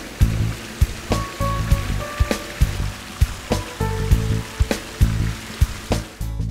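Background music with a steady beat and short plucked notes, laid over an even hiss of water spilling from the pool's sheer-descent fountain spouts.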